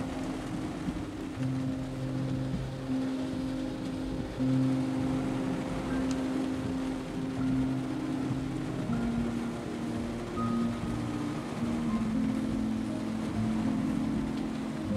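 Background music of slow, held low notes that change pitch every second or two, over a steady hiss of rain and road noise.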